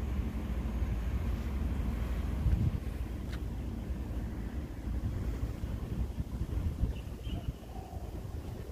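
Wind buffeting the phone's microphone: a low, uneven rumble that swells briefly about two and a half seconds in.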